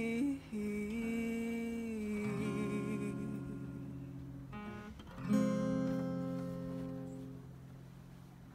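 Closing bars of a song on acoustic guitar: a last sung note held for about two seconds, then two strummed chords about three seconds apart, the second left to ring and fade out.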